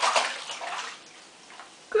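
Bathwater splashing and sloshing in a bathtub as a small child rolls onto her back in it, strongest in the first second and then dying away.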